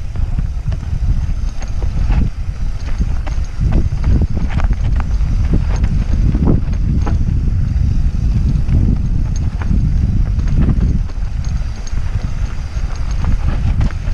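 Mountain bike riding fast down a rough dirt trail, heard from a camera on the rider: wind buffeting the microphone in a steady low rumble, with frequent clatters and knocks as the bike rattles over bumps.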